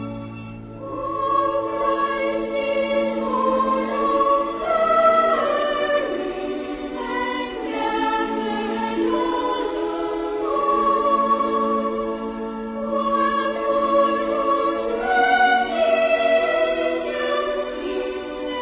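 A mixed chorus with orchestra singing a slow Christmas carol in held chords. The voices enter about a second in, as a low held chord ends.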